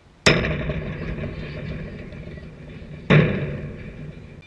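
A softball struck back off the bat hits the backstop fence right by the camera with a loud clang, and the fence rattles and rings as the noise slowly dies away. About three seconds later a second hard bang hits the fence or camera mount, with another fading rattle.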